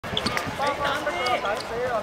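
Several young voices shouting and calling over one another during a youth football game, with a few sharp knocks of the ball being kicked.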